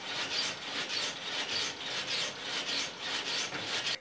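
Repeated rasping, rubbing strokes in a steady rhythm, a few a second.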